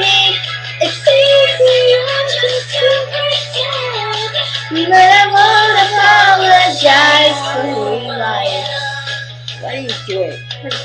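Two young girls singing a pop song along with its recorded backing track, holding long, wavering notes, over a steady low hum.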